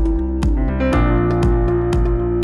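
Live band instrumental: keyboard and synthesizer hold chords over a steady drum-machine beat of about two strokes a second, with conga drums in the groove. The chord changes about a second in.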